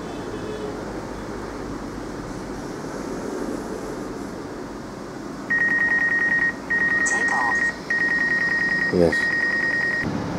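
DJI flight app's obstacle warning on the Phantom 4 Pro: a steady high beep repeated four times, each about a second long, starting about halfway through over low background noise. It signals that the forward vision sensor is detecting an obstacle close ahead, showing the sensor is working again.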